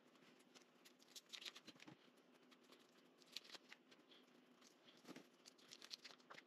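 Faint crinkling and small crackles of foil-wrapped beef bouillon cubes being peeled open by hand, over a faint steady low hum.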